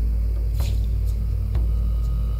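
Steady, low, droning background music with a deep rumble underneath, and two faint clicks.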